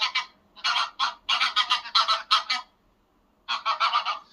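Greylag geese honking: a quick run of loud honks, a pause of about a second, then another burst of honks near the end.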